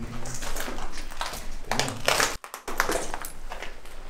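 Footsteps crunching over debris on a tunnel floor, irregular steps, with a brief sudden dropout a little past halfway.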